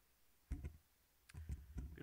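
Handling noise on a microphone: a click with a low knock about half a second in, then a quick run of clicks and low knocks in the last second before speech begins.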